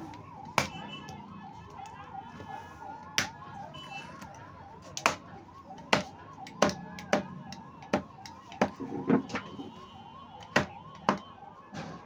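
A heavy cleaver chopping buffalo meat and bone on a wooden butcher's block: about a dozen sharp chops at uneven intervals. Behind them, a faint warbling siren-like tone rises and falls several times a second throughout.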